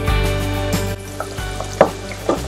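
Background music playing over water boiling hard in a cooking pot, with a few sharp knocks in the second half.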